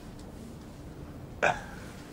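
Low room tone, broken about one and a half seconds in by a single short, sharp vocal sound.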